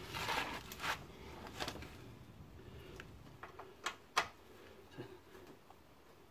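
Small clicks and scrapes of a screwdriver working the screws out of a Ford Mondeo Mk3's undertray, with two sharp clicks about four seconds in.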